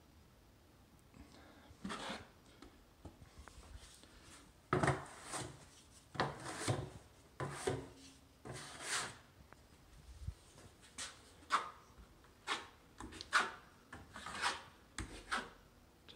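Drywall knife scraping through joint compound against the edge of a mud pan, loading the blade: a series of short scraping strokes starting about two seconds in.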